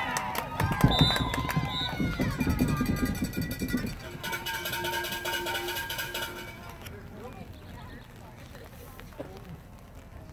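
Spectators' voices shouting and calling out during a girls' lacrosse game, with several long held shouts, fading to quieter background noise after about seven seconds.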